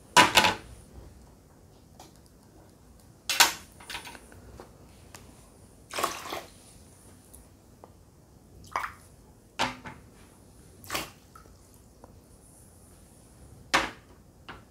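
Ceramic mugs clinking against each other and being set down on a tray: a string of about seven short, separate clinks and knocks at irregular intervals.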